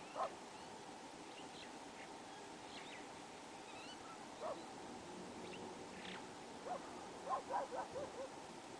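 A dog barking: a single bark just after the start, another about halfway through, then a quick run of barks near the end. Faint high bird chirps come in between.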